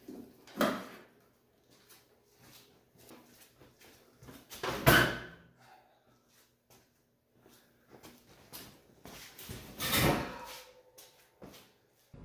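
Scattered clunks and knocks of welding gear and cables being handled at a welding cart, loudest about five seconds in and again about ten seconds in, over a faint steady hum.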